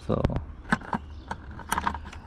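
Small plastic clicks and taps from fingers working the tab of a yellow plastic airbag wiring connector to unlatch it: a few separate ticks, then a quick cluster of them near the end.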